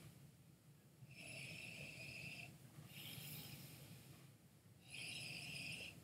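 Three faint, slow sniffs through the nose, each about a second and a half long with short gaps between, as a man noses a glass of whisky.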